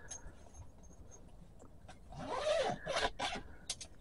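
A zipper on the rooftop tent's fabric window flap being pulled open in a few quick rasping runs, about halfway through.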